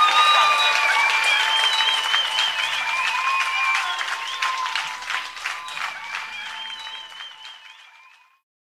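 Live audience applauding at the end of a blues song, with a few high wavering whistles over the clapping, fading out to silence near the end.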